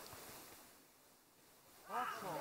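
Faint open-air hiss that dips quieter in the middle, with faint distant voices from a football pitch. A man's shout starts right at the end.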